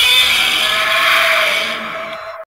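Godzilla roar sound effect: a loud, harsh screech that starts suddenly and eases off slightly near the end.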